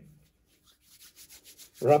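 Hands rubbed briskly palm against palm in a handwashing motion: a faint, rhythmic rubbing of about six strokes a second. A man's voice starts near the end.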